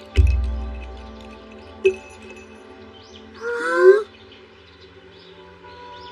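Animated-film soundtrack: soft sustained background music with a deep boom just after the start that dies away over about a second. A short click comes about two seconds in, and a brief gliding, wavering call about three and a half seconds in.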